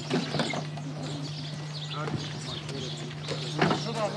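Outdoor background of distant voices and a few bird chirps over a steady low hum, with short snatches of speech about halfway through and near the end.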